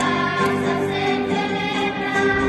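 Children's school choir singing a Spanish Christmas carol (villancico), holding long notes.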